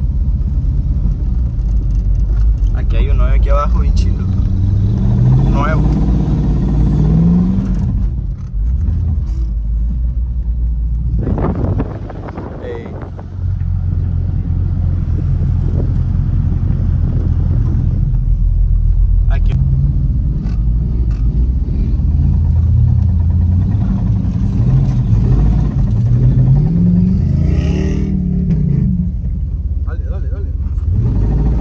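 A vehicle engine pulling through soft dune sand, heard from inside the cab, its pitch rising as it revs up twice, around five seconds in and again near the end, with a brief easing off around twelve seconds in.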